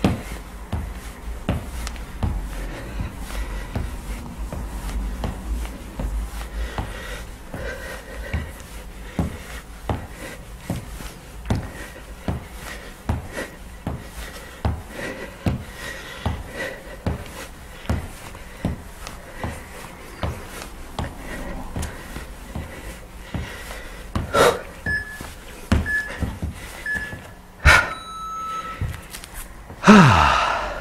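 Feet striking the floor over and over during cross-body mountain climbers, about one knock a second, with panting breath. Near the end come a few short electronic beeps and two sharp clicks.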